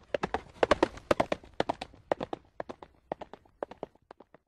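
Galloping horse hoofbeats sound effect: groups of three sharp beats about twice a second, gradually fading out.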